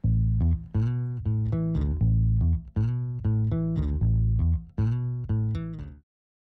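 Instrumental music with a strong bass line, played in short phrases of pitched notes; it stops abruptly at the end.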